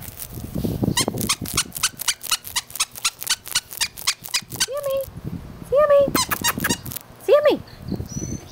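A small dog chewing a squeaky toy: a quick run of sharp squeaks, about five or six a second, for about four seconds, then a few longer, separate squeaks.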